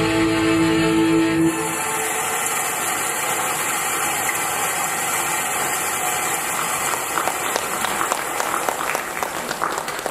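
Dance music ends on a held chord about a second and a half in, followed by audience applause that grows more distinct toward the end.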